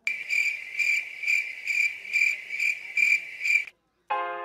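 Cricket chirping in a steady high pulsing trill, about two pulses a second, that starts and cuts off abruptly like an edited-in sound effect.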